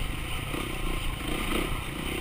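Dirt bike engine running at moderate throttle as it rides a rough woods trail, heard from on the bike, with the chassis clattering over the ground.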